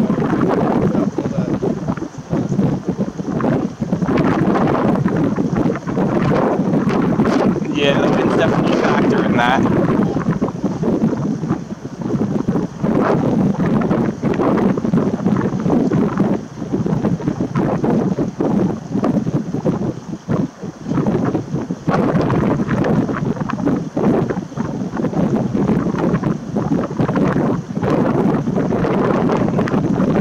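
Strong, gusty wind buffeting the camera microphone, a loud rumbling rush that rises and falls with the gusts.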